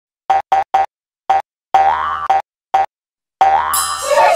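Cartoon logo jingle: a string of short, bouncy pitched notes with silent gaps between them, three quick ones at first, then a longer note that slides upward a little before the middle. A glittery magic-wand sparkle effect comes in near the end.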